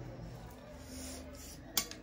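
Quiet eating sounds at a dinner table, then one sharp clink of metal chopsticks against a plate near the end.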